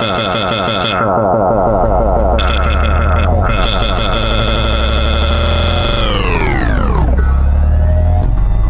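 Electronic dance music from a live DJ set: a loud, buzzy synthesizer chord over heavy sub-bass. About six seconds in the whole chord slides down in pitch and drops away, a DJ pitch-down effect, leaving only the deep bass.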